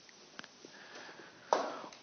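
A man's sharp intake of breath about one and a half seconds in, just before he speaks, over faint room tone with a few small clicks earlier on.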